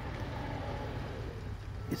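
Steady low rumble of vehicle noise, with a light hiss of wind on the microphone.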